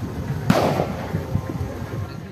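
A single firecracker bang about half a second in, with a short fading tail, over a low background rumble.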